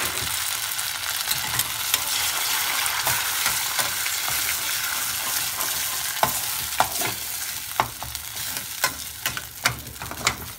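Spoon stirring and scraping rice-flour batter in a steel kadai as it cooks and thickens into dough, over a steady hiss. From about six seconds in, the spoon clicks sharply against the steel pan.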